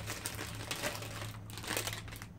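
Plastic sweet packet crinkling as it is picked up and handled, an irregular run of crackles.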